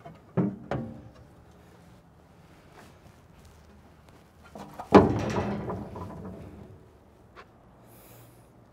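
Sheet-steel covers of a John Deere 3960 forage harvester being unlatched and swung open: two sharp metal clanks near the start, then a loud clang about five seconds in that rings on and fades over about two seconds.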